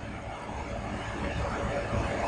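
Steady low background rumble and hum, with no distinct sound standing out.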